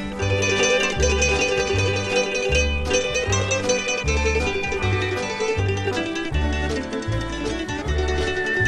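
Instrumental break in an old-time country brother-duet song: a plucked mandolin lead over guitar, with a steady bass note about every two-thirds of a second alternating between two pitches.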